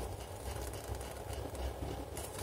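Faint rustling of a paper manual held open in the hands, over a low steady background hum.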